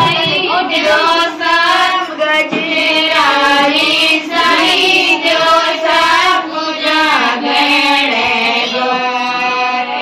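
A woman singing a Gangaur folk song in a high voice, in long held notes that waver in pitch.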